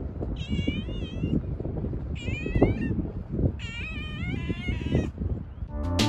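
A stray cat meowing three times, each meow bending up and down in pitch; the third is the longest.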